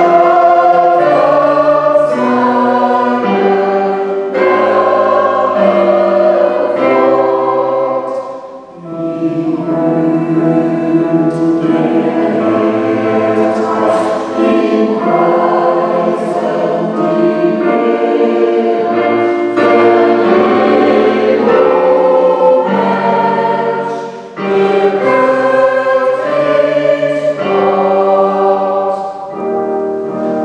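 Mixed choir of men's and women's voices singing a sacred piece with piano accompaniment, in long held phrases with brief breaks between them about nine and twenty-four seconds in.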